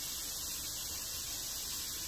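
Steady sizzling hiss of chopped garlic and ginger frying in a hot pan.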